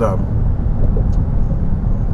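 Steady low rumble of road and engine noise inside a car's cabin while it drives along a freeway.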